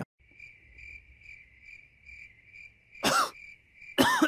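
Crickets chirping in a steady, evenly pulsing trill. About three seconds in comes one brief voiced sound from a person, falling in pitch.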